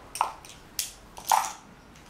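Makeup brushes being put back into their small carrying pot: three sharp clacks about half a second apart.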